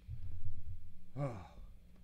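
A low rumble in the first second, then a man's voice lets out one sigh that falls steeply in pitch, about a second in.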